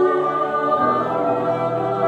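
Mixed choir of men's, women's and children's voices singing sustained chords, moving to a new chord a little under a second in.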